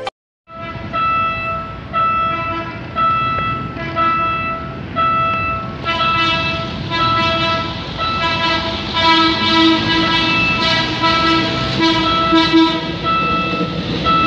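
Railway level-crossing warning bell ringing in a steady rhythm, about one strike a second, as a PNR Hyundai Rotem diesel multiple unit approaches. About six seconds in, lower tones join and the sound grows louder and denser: the approaching DMU's horn sounding over the bell.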